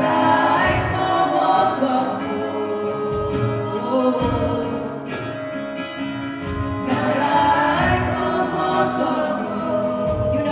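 Live worship band playing a song, with voices singing over guitars, keyboard and a steady drum beat.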